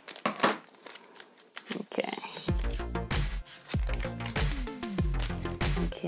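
Scissors snipping through a foil trading-card booster pack, with crinkling of the foil wrapper and a short rip about two seconds in. About halfway through, background music with a deep bass line comes in and carries on.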